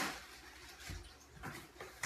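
Light scraping and rustling of a cardboard shipping box and its plastic air-pillow packing being handled, with a low thump about a second in and a few small clicks after it.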